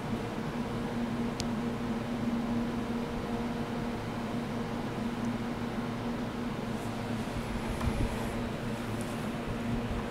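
A steady low machine hum with a constant low tone, and one faint tick about a second and a half in.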